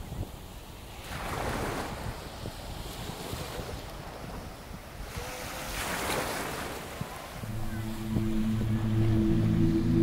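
Ocean surf rolling in slow swells, one cresting about a second and a half in and another around six seconds. A few seconds before the end, a low sustained musical chord comes in over the waves.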